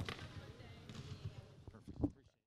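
Faint room tone of a large arena with a few soft, irregular low thuds. A brief louder sound comes right at the end, just before everything cuts to silence.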